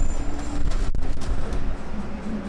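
Busy city street noise: a heavy, steady low rumble, with a brief dropout a little under halfway through.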